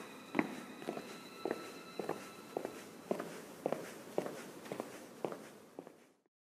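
Footsteps walking at an even pace, about two steps a second, with a faint steady high tone behind them.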